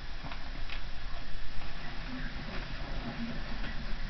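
A man eating a small chilli pepper: scattered faint mouth clicks and chewing sounds over a low steady hum.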